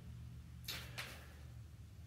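Quiet room with a faint, brief rustle of paper a little after half a second in, as a spiral-bound booklet is handled.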